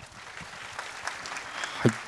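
Audience applause: many hands clapping steadily.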